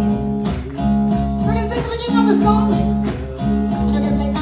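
Live rock band music: guitar chords, held and re-struck about once a second, with a woman singing lead.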